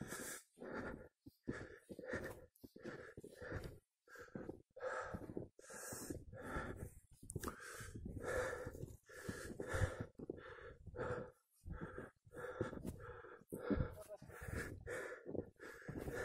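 A person panting hard close to the microphone, in quick breaths about two a second: the laboured breathing of a hiker climbing at high altitude, short of breath.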